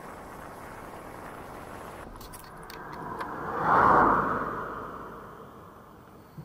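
Steady road and wind noise of an e-scooter ride, then a motor vehicle passing close by: a rush that swells to its loudest about four seconds in and fades away. A few light clicks come just after two seconds.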